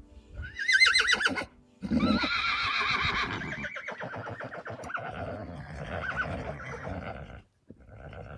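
A horse whinnying twice: a short, high, quavering call about half a second in, then a longer call that wavers and trails off lower, fading out near the end.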